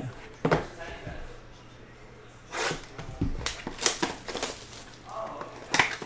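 A cardboard trading-card box being handled and torn open: scattered rustling with several sharp cracks and tearing snaps, the busiest stretch about halfway through.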